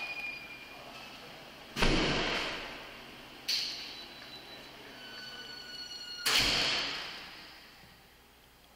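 Heavy doors banging shut in a hard-walled hallway: three loud bangs with echoing tails, the first and last deep and heavy, the middle one lighter. Faint high ringing tones are heard between the second and third bang.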